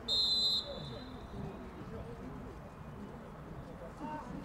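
Referee's whistle: one short, shrill blast of about half a second at the start, signalling play to restart for a goal kick. After it, faint open-air pitch ambience with distant voices of players.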